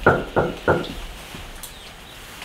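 Three quick knocks on an apartment door in under a second.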